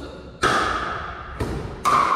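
Pickleball rally: a hard plastic pickleball struck by paddles, three sharp hits about half a second, a second and a half, and just under two seconds in, the last the loudest. Each hit rings briefly and echoes in the gymnasium.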